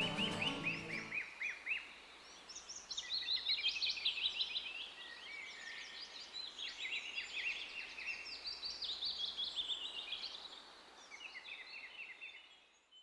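Music ends about a second in, leaving small birds singing: many quick chirps and trills overlapping, fading away near the end.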